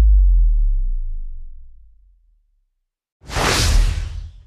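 Soundtrack sound effects: a low tone sliding down in pitch and fading away, about a second of silence, then a rising whoosh near the end.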